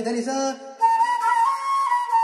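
Bamboo transverse flute playing a slow film-song phrase in long held notes, stepping up to a higher note about halfway through, with breathy air over the tone. A lower-pitched line sounds under it for the first half second, then drops out.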